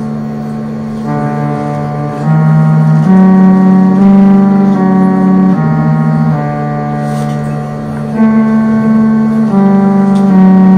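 Electronically reproduced tones of an instrument built for Byzantine music: an organ-like sequence of held, steady notes stepping to a new pitch every second or so.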